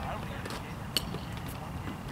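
A single sharp, ringing ping about halfway through, like a metal baseball bat striking a ball, over the distant chatter of players and spectators.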